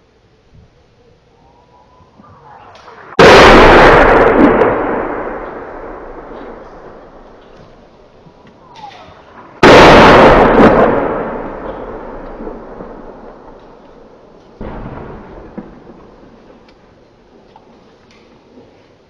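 Artillery shells exploding: two very loud blasts about six seconds apart, each fading in a long rolling rumble and each just after a brief faint whistle, then a third, weaker blast near the end.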